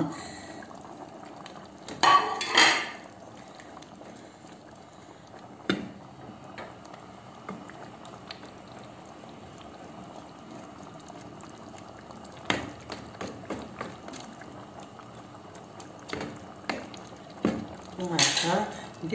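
Green beans in tomato sauce simmering in a pan, a steady bubbling. A brief louder clatter comes about two seconds in, and light knocks of the spoon against the pan come in the second half.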